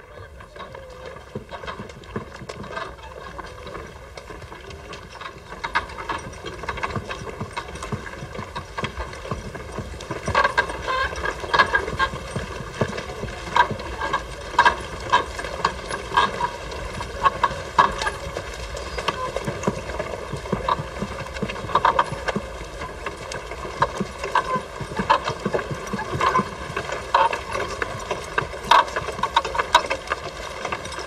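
Horses' hooves clip-clopping, the clacks growing louder and denser from about ten seconds in, over a steady low rumble.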